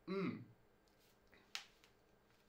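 A man's short, falling 'hmm', then quiet room tone and a single sharp click about one and a half seconds in.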